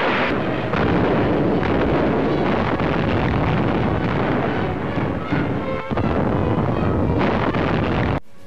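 Old newsreel battle soundtrack: a dense, loud roar of naval gunfire and explosions mixed with music, with a brief dip about six seconds in.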